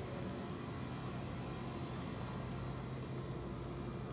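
Steady low hum under a faint, even hiss: background room tone with no distinct events.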